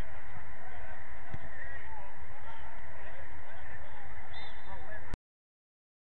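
Outdoor pitch noise: wind buffeting the microphone, with many faint short high calls over it. The sound cuts off suddenly about five seconds in.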